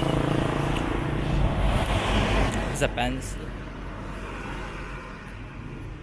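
A motor vehicle passing close by on the road: a steady engine hum, then a swell of engine and tyre noise about two seconds in that fades away.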